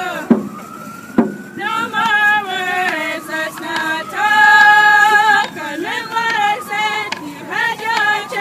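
A group of voices singing together, a First Nations hand-drum song, with a long upward slide in pitch at the start. A frame hand drum is struck a couple of times in the first second or so, under the singing.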